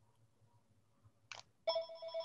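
A telephone starts ringing about a second and a half in: an electronic ring with a fast fluttering trill at a steady pitch. Just before it there is a brief high hiss.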